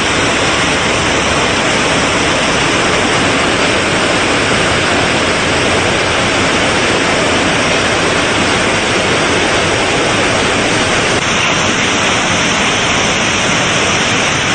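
Pressurised water jetting from a burst main water supply pipe: a loud, steady rush of spray.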